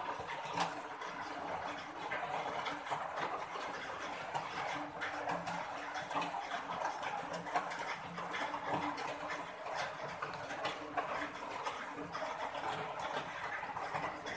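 Cat eating close to the microphone: an irregular run of small chewing clicks and smacks over a faint steady hum.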